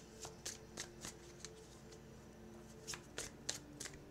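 Tarot cards being handled and shuffled by hand: light, quick card snaps in two short runs, one in the first second and one near the end, with a quieter stretch between.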